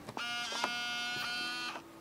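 LS-240 SuperDisk drive in an IBM ThinkPad A31 making its start-up noise at power-on: a steady, high buzzing whine for about one and a half seconds. A fainter low hum comes in partway through.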